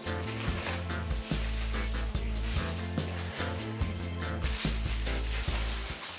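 Background music with a steady bass line, with the crinkle and rustle of plastic bubble wrap as a hand pulls the wrapped adapter from its box.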